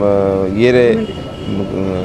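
A man's voice speaking in an interview, with a long drawn-out syllable in the first second, then quieter talk.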